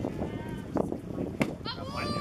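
A pitched baseball smacking into the catcher's mitt about one and a half seconds in, a sharp single pop. Voices from the field and stands start calling out right after it.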